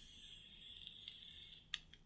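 Faint, steady thin whistling hiss of air drawn through a Juul e-cigarette during a long inhale, ending with a small click near the end.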